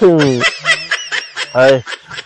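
A man snickering and laughing in short voiced bursts, opening with a falling vocal sound and ending with a louder burst near the end.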